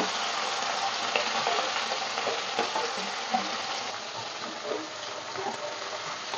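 A whole fish shallow-frying in hot oil in a wok, sizzling steadily with many small crackles that ease off slightly over the seconds. There is a brief knock at the very start.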